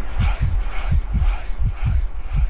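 Euro-disco dance track in a stretch carried mainly by a run of deep kick-drum hits with bass, the higher parts of the mix faint.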